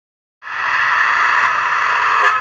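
A bus passing close by: a loud, steady rush of road noise that cuts in about half a second in.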